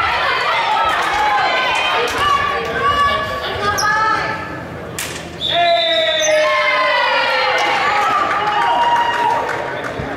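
Many girls' voices calling out and chattering over one another in an echoing gymnasium, with balls bouncing on the hardwood floor. A single sharp knock comes about five seconds in.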